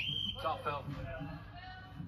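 A short, high, steady signal tone lasting about half a second, followed by a brief voice.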